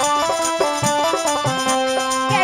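Instrumental passage of a Fiji Hindustani folk song: a harmonium plays a sustained, stepping melody over deep dholak drum strokes, with no singing.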